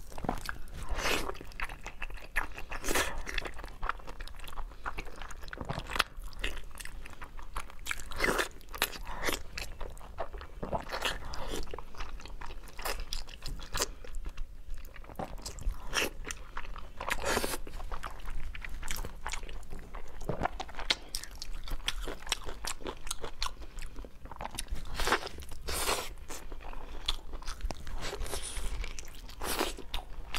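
A person biting and chewing braised pork knuckle, close to the microphone: irregular wet mouth smacks and clicks as skin and meat are chewed.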